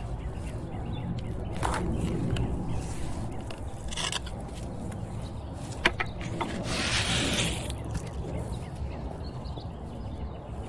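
Garden edging bricks being lifted and reset in clay soil: a few short knocks and scrapes of brick on brick and soil, with a longer gritty scrape about two-thirds of the way through.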